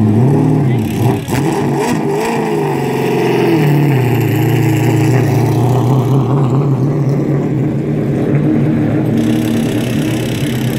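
Stock car's V8 race engine, a 602 crate engine, revving in a few up-and-down blips, then running at a steady drone as the car pulls away.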